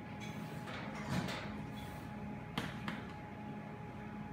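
Light knocks and clicks of sliced nori roll pieces being handled and set on a plate on a wooden counter, over a steady room hum: a soft thump about a second in, then a sharp click and a smaller one a little later.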